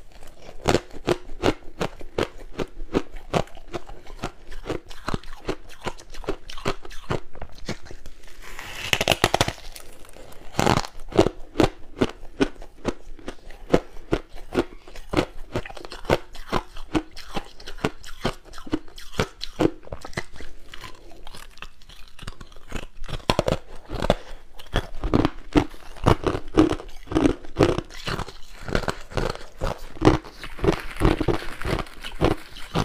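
Close-miked biting and chewing of white, snow-like frozen ice: a continuous run of rapid, crisp crunches, with a brighter crackling stretch about nine seconds in.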